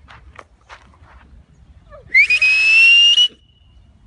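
A loud whistle lasting about a second, about two seconds in: it sweeps up sharply, then holds on a high steady note that creeps slightly upward. A few faint clicks come before it.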